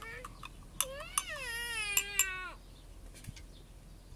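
A young child's voice: one long call of about a second and a half that slides down in pitch at the end. A few light clinks, like a spoon against a glass, fall around it.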